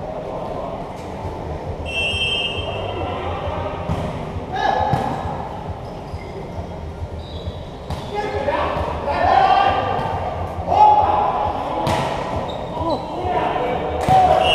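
Volleyball rally: several sharp slaps of hands and arms on the ball, with players shouting to each other.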